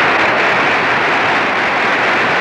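A large crowd of troops cheering, starting suddenly and holding loud and steady.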